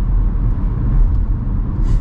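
Road noise inside the cabin of a Volvo V60 B4 at speed: a steady low rumble of tyres and drivetrain. The firm rear coil-spring suspension gives light knocks over the road surface, the ride the driver calls コツコツ from the rear.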